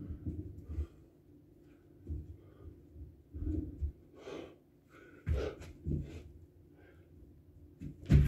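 A man breathing hard through a set of burpees, with a few heavy exhalations and low thuds of his feet and gloved hands landing on a rubber floor mat.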